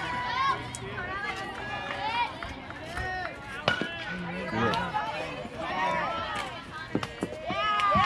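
Several high voices of players and spectators calling and shouting from around a youth baseball field, overlapping and indistinct, with a few sharp knocks in the middle and near the end.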